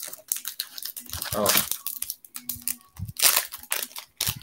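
Foil wrapper of a Pokémon Rebel Clash booster pack being torn open and crinkled by hand: a run of crackling rips and rustles.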